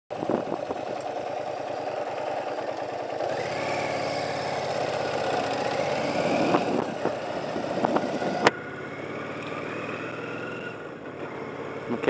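Motorcycle engine running under the rider, pulling away and building revs from about a quarter of the way in, with a sharp click about two-thirds through, after which it settles to a lower, steady cruise.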